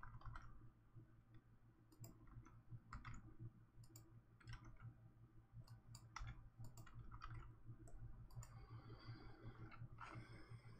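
Faint, irregular computer mouse clicks over a low, steady hum, at a level near silence.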